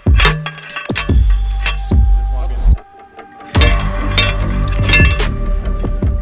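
Hand post driver slamming down onto steel T-posts: a run of sharp, ringing metallic clangs, about one or two a second, with a short pause about halfway through, over background music.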